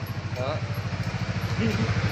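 Honda Winner X's single-cylinder engine idling with a steady, fast, even beat.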